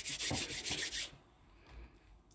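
A hand rubbing a chin and beard close to the phone's microphone: a quick scratchy rubbing of about seven strokes a second that stops about a second in.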